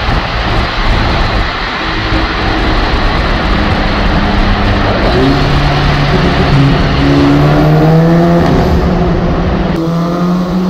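Mk5 Volkswagen Golf GTI's turbocharged 2.0-litre four-cylinder, fitted with an aftermarket downpipe, pulling through a road tunnel with road noise throughout. About halfway in the engine note steps up and climbs as the car accelerates.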